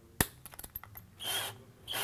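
Keyless chuck of a cordless drill being tightened by hand around a long self-tapping screw: one sharp click, then a few light ticks and two short rasping bursts.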